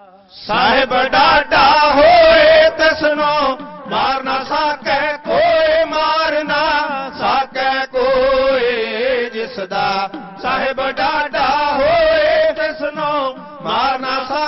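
Sikh dhadi singing: male voices chanting a Punjabi vaar in quick phrases, accompanied by a bowed sarangi and struck dhadd hourglass drums.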